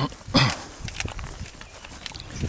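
Hikers' footsteps on grassy, rocky ground, with the tips of trekking poles clicking against rock, and a loud short burst of noise about half a second in.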